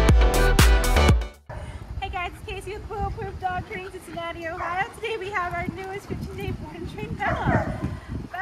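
Electronic intro music with a steady beat that cuts off about a second and a half in. It is followed by a mini goldendoodle puppy's repeated short, high-pitched whines and yips.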